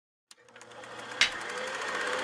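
Intro sound effects building up: a rapid, even ticking under a rising swell of noise, with a short whoosh about a second in.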